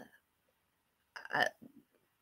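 A woman's short hesitant "uh" about a second in, between stretches of near silence on a video-call line.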